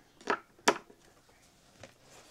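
A few small sharp clicks, the clearest under a second in, from multimeter probe tips and leads being handled against a battery's metal terminal bolts during a voltage check.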